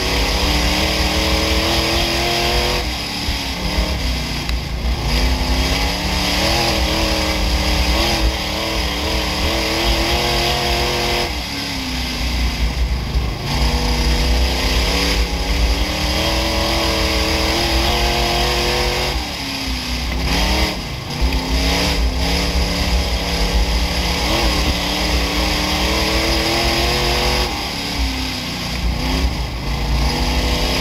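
Midwest Modified dirt-track race car's V8 engine heard from inside the car at race pace. It revs up along the straights and drops off four times, about every eight seconds, as the car lifts for the turns lap after lap.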